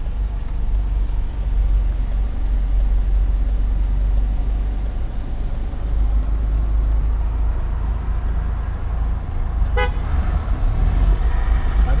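Steady low engine and road rumble inside the cabin of a Toyota towing a caravan. A short horn toot sounds about ten seconds in.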